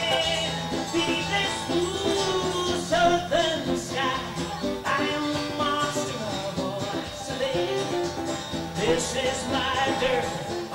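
Live country music: a man singing into a microphone with band accompaniment, his voice bending and holding notes over steady guitar-led backing.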